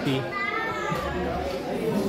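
A young boy's voice: one short high-pitched utterance, rising then falling in pitch, lasting under a second.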